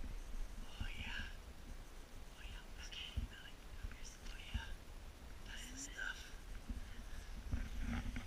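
Soft whispering voices in short, scattered phrases, with a few low knocks underneath.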